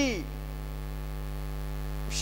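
Steady electrical mains hum, low and unchanging, left on its own once a man's word trails off at the very start.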